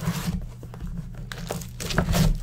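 Cellophane shrink wrap being torn and crinkled off a sealed trading-card box, in irregular crackles, as the box is opened.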